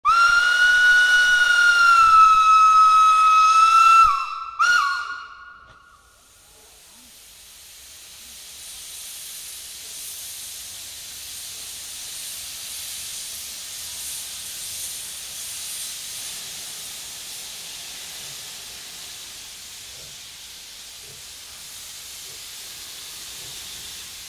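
A 1914 steam locomotive's whistle blows one long, steady blast of about four seconds, followed by a short toot. Then a steady hiss of steam builds and holds as the engine pulls out of the station.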